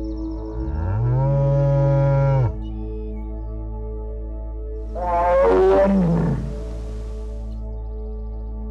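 Soft ambient music with a steady drone, over which a cow gives one long, low moo that rises, holds and falls off about two and a half seconds in. About five seconds in comes a louder, higher animal call that slides down in pitch.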